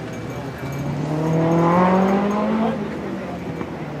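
Toyota MR2 Mk1's four-cylinder engine revving up under acceleration, its pitch climbing steadily for about two seconds before easing off.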